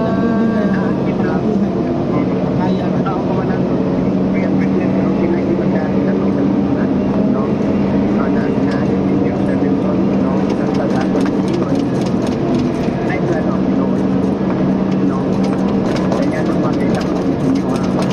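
Excavator's diesel engine running steadily with an even drone as the machine travels along the road. A fast light clicking rattle joins it about halfway through.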